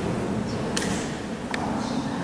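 Two sharp knocks about a second in and again near the end, each trailing off in the echo of a large stone church interior, over a steady low rumble of room noise.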